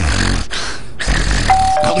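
Cartoon sound effects: two short noisy whooshes, then, about one and a half seconds in, a two-note chime like a doorbell's ding-dong, the second note lower, both notes held.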